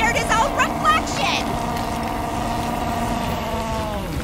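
High-pitched cartoon voices in a quick burst of chatter, then a long held, slightly wavering wail that sinks in pitch right at the end.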